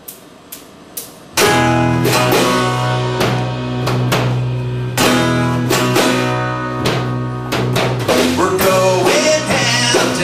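Three sharp taps about half a second apart, then live band music starts abruptly about a second and a half in: strummed acoustic guitar with an electric guitar played through a small amplifier, on a regular beat.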